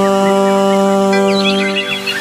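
Serja, the Bodo bowed folk fiddle, holding one long steady note in an instrumental passage.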